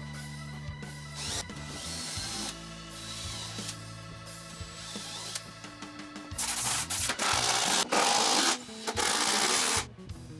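Background music, with loud workshop tool noise breaking in about six seconds in and running in three stretches, each about a second long, until just before the end.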